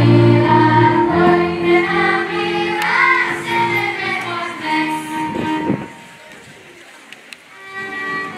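Children's choir singing a folk song together, accompanied by a folk string band of fiddles and double bass. The song ends about six seconds in, there is a short lull, and the fiddles start up again near the end.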